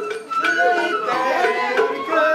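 Sawara bayashi festival music: a high bamboo flute melody that slides and wavers between notes, over taiko drum strokes.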